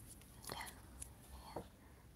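Quiet room tone with a faint whispered voice: a few soft, short sounds about half a second and a second and a half in.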